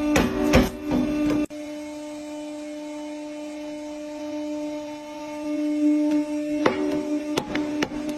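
Hydraulic press with a pointed ram: sharp cracks of stacked coins snapping under it for the first second or so, then a sudden cut to the press's steady hum as the point sinks into a thick book, with a few sharp cracks near the end as the book gives way.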